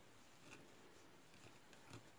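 Near silence, with a few faint soft ticks of a crochet hook and cotton cord being worked by hand.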